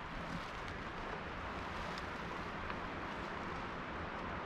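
Faint, steady outdoor background noise in a woodland, with a couple of soft ticks around the middle.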